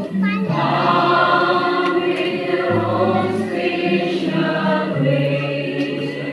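Church choir singing a hymn in long held notes, steady and loud throughout.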